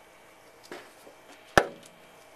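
A single sharp knock about one and a half seconds in, with a softer knock shortly before it.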